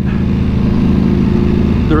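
Ducati Panigale V4's V4 engine with Termignoni exhaust, running steadily at low revs as the bike rolls slowly.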